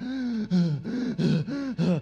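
A man gasping and panting, acting out a runner who is badly out of breath. A long breathy gasp opens the run, followed by about five short, pitched gasps at roughly three a second.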